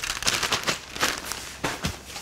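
A plastic zip-top bag holding tortilla chips crinkling and crackling as it is handled, a dense run of quick, irregular crackles.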